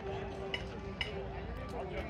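Background voices of people talking nearby, with two brief clinks about half a second and a second in.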